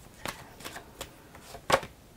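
A deck of oracle cards being shuffled by hand: a few separate papery card slaps and flicks, the loudest shortly before the end.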